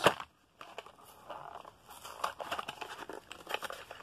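Plastic blister pack and cardboard card of a Hot Wheels car crinkling and tearing as it is opened by hand, with a sharp click at the start and scattered small clicks after.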